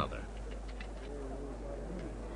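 Faint low cooing of a bird, heard from about half a second in over a steady low hum.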